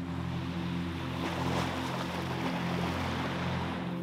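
Sea waves washing on the shore, a steady rush, over soft sustained background music.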